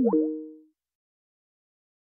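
Microsoft Teams call-ended chime: a short electronic tone of crossing upward and downward pitch sweeps that settle into two held notes and fade out within about three-quarters of a second.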